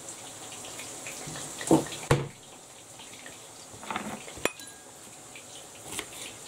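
Chef's knife trimming the ends off spring onions, the blade knocking on the work surface a few times, with a sharp click about four and a half seconds in.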